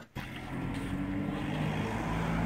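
A motor vehicle running steadily: a low engine hum over an even wash of road or wind noise, starting just after a brief hush at the start.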